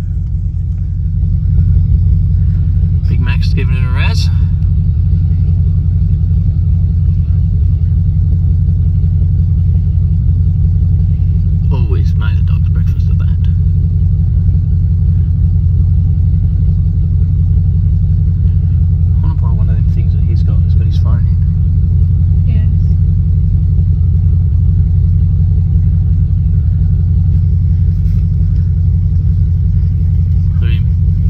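A 4x4's engine idling steadily, heard from inside the cab as a constant low drone, with faint voices now and then.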